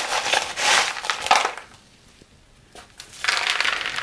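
Loose pumice potting stones being scooped and stirred by hand in a plastic tub, making a gritty crunching rattle. It stops about a second and a half in and starts again near the end.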